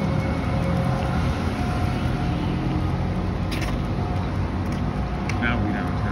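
City street traffic: a steady low rumble of passing cars, with a short high-pitched chirp near the end.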